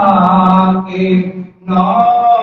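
Qawwali singing: a man's voice holding long notes, the first sliding slowly down. It breaks off briefly about one and a half seconds in, and the next note follows.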